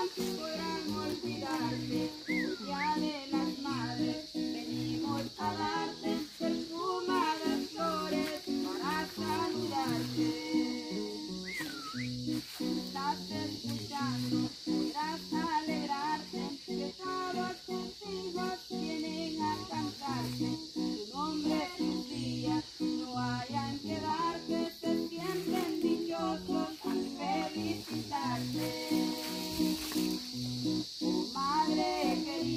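A voice singing a song of praise to acoustic guitar accompaniment, the melody running on without a break over strummed chords and bass notes.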